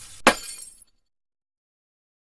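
Glass-shattering sound effect: one loud crash about a quarter second in, ringing off within the first second, then silence.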